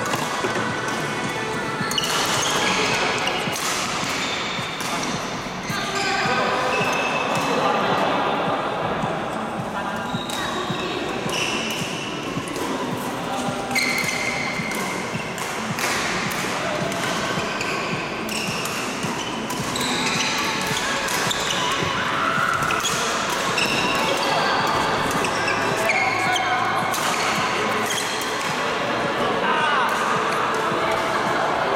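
Indoor badminton doubles rally in a large echoing hall: repeated sharp racket hits on the shuttlecock and footfalls, short high squeaks of shoes on the court floor, and players' voices in the background.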